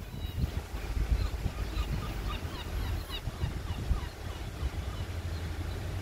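Low rumble of an ER2M electric multiple unit pulling away, with small birds chirping in short repeated notes over it.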